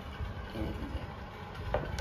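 Low steady background rumble, with one short click near the end.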